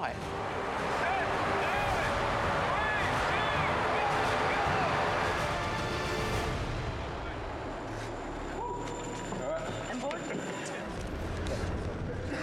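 Indistinct voices over a noisy background, with a steady tone held for about two seconds past the middle.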